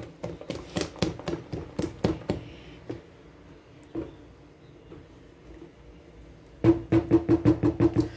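A silicone spatula scraping the sides of a stand-mixer bowl and knocking against it: a quick string of sharp knocks in the first two seconds, quieter scraping in the middle, and a fast run of taps near the end.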